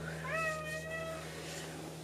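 A domestic cat meowing once: a single call about a second long that rises at the start and then holds steady.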